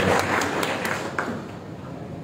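Audience applause in a hall, thinning to a few scattered claps and dying away over the first second or so.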